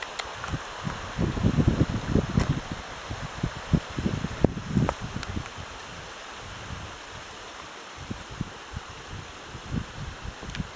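Steady rush of a mountain river under low, irregular bumps and rustles of movement in brush close to a handheld camera's microphone. They are heaviest between about one and five seconds in, then thin out.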